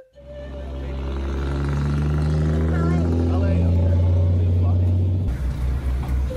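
A tour truck's engine running with a deep rumble, its pitch rising slowly as it accelerates. About five seconds in, the sound becomes a fast pulsing low throb, as heard from a bench in the truck's open back.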